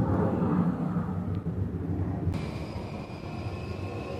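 Steady low background rumble that fades over the first two seconds; a little past two seconds in, the sound changes abruptly to a quieter steady hum with a faint high whine.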